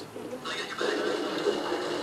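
Video game sound playing from a computer's speakers, voice-like, growing louder about half a second in.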